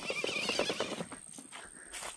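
Footsteps of a person and a leashed dog walking on a pine-needle and sand trail, with a short wavering high-pitched sound during the first second.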